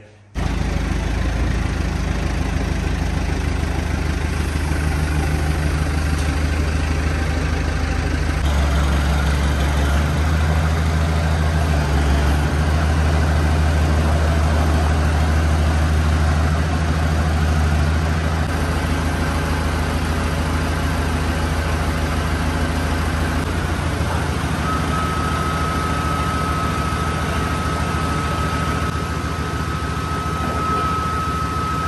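JCB telehandler's diesel engine running steadily under hydraulic load as its boom lifts an engine pack. The engine note changes a few times. A thin steady high whine joins about three-quarters of the way through.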